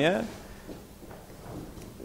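The tail of a man's speaking voice, then a quiet pause of low room tone with one faint click.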